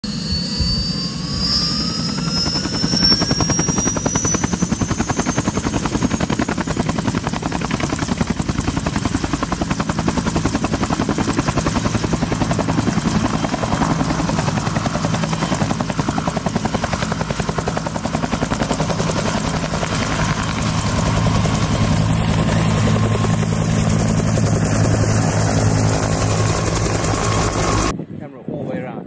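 Bell UH-1 Huey helicopter running: the fast, steady beat of its two-blade main rotor over a turbine whine. A whine rises in pitch over the first few seconds, and the low rotor sound grows a little louder from about two-thirds of the way through.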